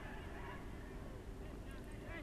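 Faint open-air football stadium ambience with a few faint, distant calls that rise and fall in pitch, such as players shouting across the pitch.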